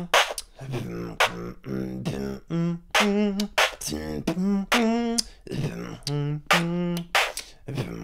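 Human beatboxing: a pattern of kicks, BMG snares and "t" hi-hats played while humming a bass line, the hum moving between two notes under the sharp drum clicks.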